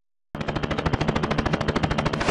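A rapid, even rattle of sharp pulses, about eighteen a second, much like machine-gun fire, starting about a third of a second in: a comic sound effect set against a figure spinning at high speed.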